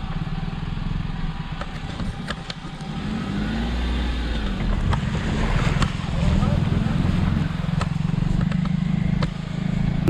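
Car engine heard from inside the cabin as the car crawls over a rough, muddy dirt track, its pitch rising and falling with the throttle. Scattered clicks and knocks come from the wheels and underbody on the uneven ground.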